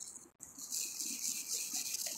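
Faint, scratchy hiss of a small wire brush scrubbing dirt off a freshly dug buffalo nickel, starting about half a second in.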